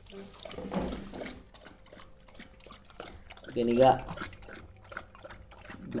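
A dog lapping milk from a bowl: a run of quick, irregular wet laps and clicks. A short voice-like sound about two-thirds of the way through is the loudest moment.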